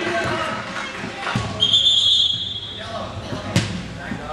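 A referee's whistle blown once, a steady shrill tone of a little over a second, about one and a half seconds in, over shouting voices echoing in a sports hall. Near the end comes a single sharp thud of the ball being struck.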